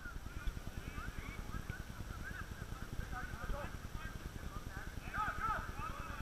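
Distant shouting of players calling to each other across a football pitch: short, high, arching calls that come every second or so, over a low flickering rumble on the microphone.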